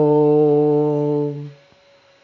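A man's voice chanting one long syllable of a seed mantra on a single steady pitch. It is held for about a second and a half and then breaks off.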